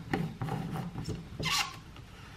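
Plastic blade lid being screwed onto a personal blender cup: a series of rasping clicks from the threads turning, ending in a louder scrape about one and a half seconds in as it is turned tight.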